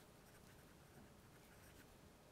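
Faint scratching of a pen writing on paper, barely above near silence.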